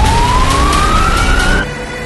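Police car siren: a single wail rising steadily in pitch, cut off abruptly about one and a half seconds in, over a dense low rumble.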